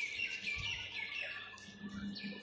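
Birds chirping: many short, rapid, overlapping high chirps.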